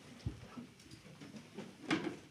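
Handling noise from someone getting up and moving beside the microphones: a low thump about a quarter second in and a sharper knock near the end, over faint room noise.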